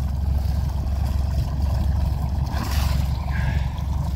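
Perkins diesel engine of a 1970s canal cruiser running steadily at idle, a low continuous rumble.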